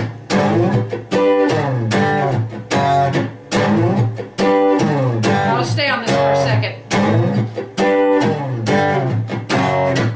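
Steel-string acoustic guitar playing a blues verse in G. It repeats a riff in a steady rhythm, with a low G struck hard and notes sliding up in pitch.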